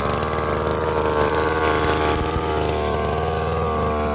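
Small petrol engine of a backpack power sprayer running steadily at a low, even speed.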